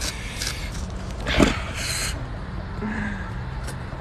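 Steady low outdoor background rumble, with a brief short sound about a second and a half in and a short hiss just after.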